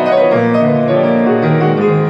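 Grand piano played with both hands: chords ringing over held bass notes, changing several times a second.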